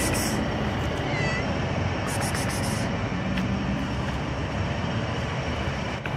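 A kitten gives one short, high meow about a second in, over a steady background rush, with a brief rustle a little later.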